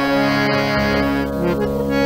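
Harmonium playing a devotional melody over held chords, the lead-in to a sung dhun. A deep low note comes in just under a second in.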